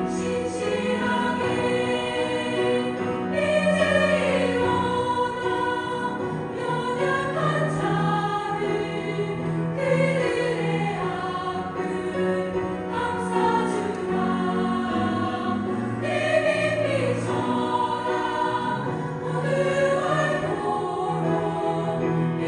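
Women's choir singing a Korean sacred song in part harmony, with sustained chords that move throughout.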